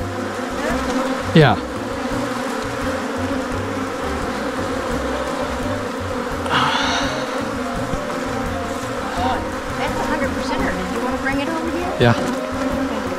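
Steady buzzing hum of a honeybee colony in an opened hive, with bees flying close around the microphone. A short rustle sounds about six and a half seconds in.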